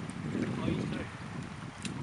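Gentle flow of a shallow creek, with wind rumbling on the microphone as a steady low noise.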